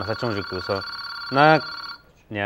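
Telephone ringing: a steady high electronic tone that begins suddenly and cuts off after about two seconds, with a man's voice over it.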